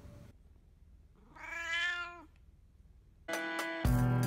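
A domestic cat meows once in the middle, a single call about a second long that drops in pitch at its end. Music starts suddenly near the end, soon louder than the meow.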